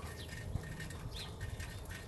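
Quiet outdoor background with a steady low hum, and one faint short rising bird chirp about a second in.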